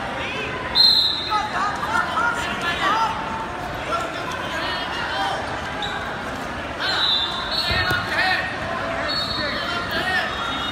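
Wrestling shoes squeaking on the foam mat during a youth wrestling bout, with shouting voices echoing around a large hall. Sharp, high squeaks come about a second in and again around seven seconds.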